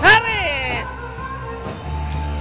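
A loud, high-pitched human yell right at the start, rising then falling in pitch and lasting under a second, over music with a steady bass.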